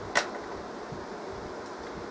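A single short click just after the start, then faint steady room noise.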